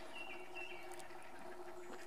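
Faint outdoor ambience: a few short, thin, high bird chirps in the first second, over a faint steady hum.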